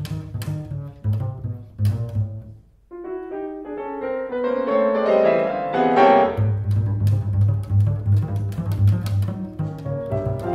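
Double bass and piano playing a classical sonata: short detached notes at first, a brief pause about three seconds in, then a rising line, then a run of repeated low notes in the bass.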